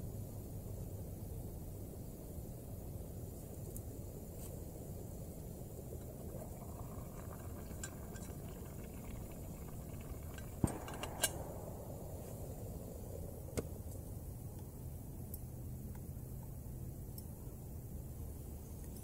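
Small canister gas stove running steadily under a steel canteen cup of simmering split pea soup, with a few sharp metal clinks about ten seconds in as the cup's lid is lifted, and one more a few seconds later.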